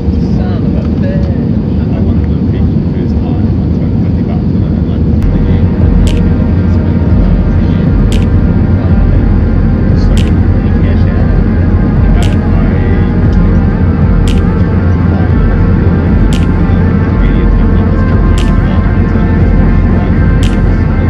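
Airbus A320 cabin noise on approach: a loud, steady rumble of the jet engines and rushing air. A steady whine joins it about five seconds in, and a sharp tick sounds about every two seconds.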